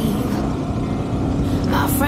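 Motorcycle engine running on the move, with heavy wind rumble on the microphone.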